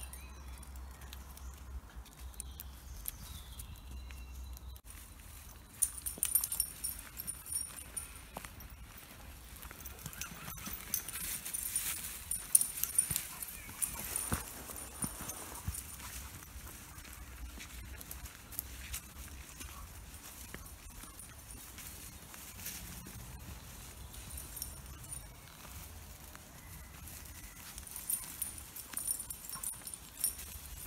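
Footsteps of a person walking a dog on a lead along a woodland path, with rustling and soft knocks from handling the phone. The knocks come irregularly and are busiest about six seconds in and again from about eleven to fifteen seconds.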